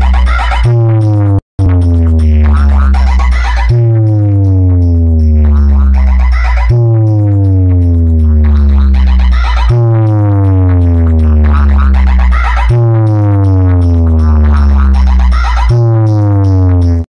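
Large stacked DJ speaker box playing an electronic bass-test track at high volume. A deep bass note slides down in pitch and restarts about every three seconds, and the sound cuts out briefly about a second and a half in.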